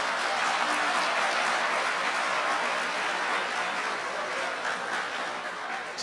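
Auditorium audience applauding, a steady wash of clapping that thins out near the end.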